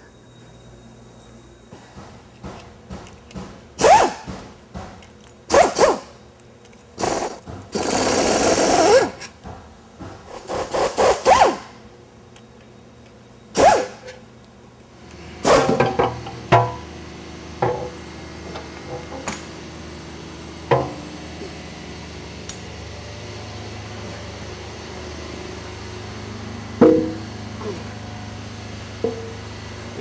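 Pneumatic air wrench running in short bursts, with metal clanks between, as the oil pan bolts of an engine block are taken out. About halfway through, a steady low hum takes over, broken by a few light knocks.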